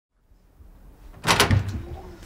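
A door being opened, with a loud clunk a little over a second in, over faint room tone.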